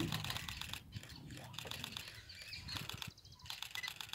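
Faint wild birdsong: short, high chirps repeated every so often over quiet background, with light clicking. The tail of a low tiger growl sounds briefly right at the start.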